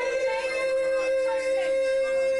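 A man singing one long held note, accompanied by acoustic guitar, in a live solo acoustic performance.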